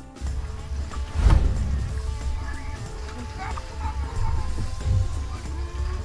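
Background music over a heavy low rumble of wind buffeting the microphone on an open boat, with a loud thump about a second in and smaller knocks later.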